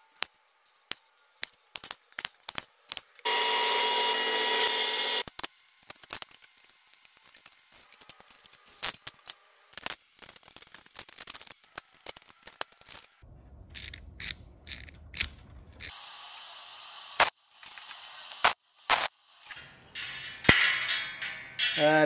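Workshop assembly sounds: many separate clicks and knocks of metal awning parts being handled and bolted together, with a power tool running for about two seconds about three seconds in.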